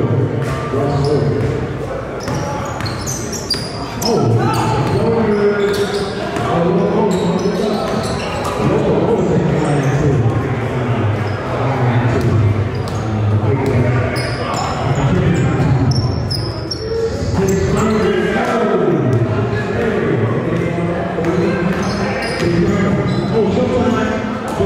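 A basketball bouncing on a hardwood gym court during play, with sharp thuds and short high squeaks, under constant voices of players and onlookers echoing in a large hall.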